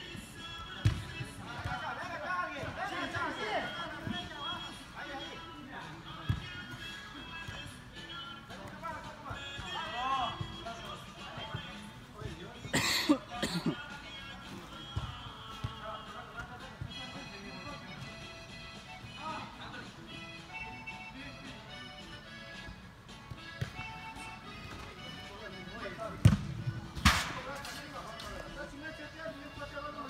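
Soccer ball kicked on an indoor turf pitch: a few sharp thuds, the loudest about thirteen seconds in and two close together near the end, amid players' distant shouts and background music.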